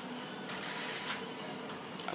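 Hookah being drawn on: faint bubbling of water in the base and the hiss of air pulled through the hose, strongest from about half a second to a second in.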